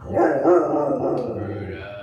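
A large dog growling: one long, wavering growl that starts suddenly, is loudest in the first second and tails off over about two seconds.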